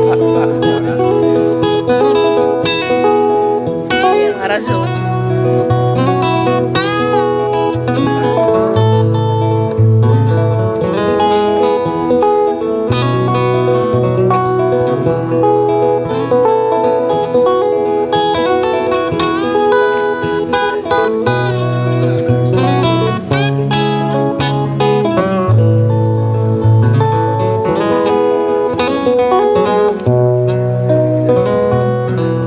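Instrumental break of an acoustic blues song: two acoustic guitars strumming and picking over steady bass notes, with a harmonica playing bending, wailing lines on top.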